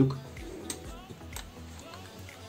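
Two light clicks from a Fakir Verda steam-generator iron being switched on and handled, about 0.7 s apart, over quiet background music.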